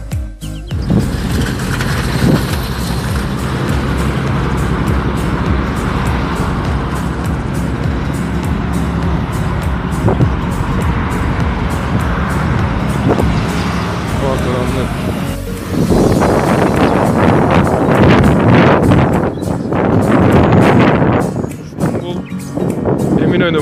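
Busy city waterfront ambience: road traffic and people's voices, with music in the background. It grows louder and rougher about sixteen seconds in.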